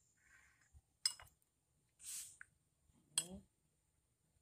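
A metal spoon clinking twice against a bowl, once about a second in and again near the end, as it scoops soft agar-agar pudding in syrup.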